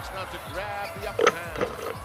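Basketball game broadcast audio playing quietly: a commentator's voice over arena noise.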